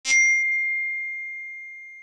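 A single bright chime struck once, ringing on one high tone that slowly fades.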